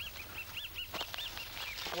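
A bird giving a quick series of short, high, arched chirps, about five a second, which stop about one and a half seconds in.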